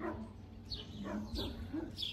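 Dogs whining and yipping faintly: a few short, high, falling cries.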